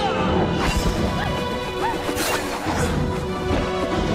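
Staged sword-fight sound effects: several sharp hits and clashes in quick succession over a film music score.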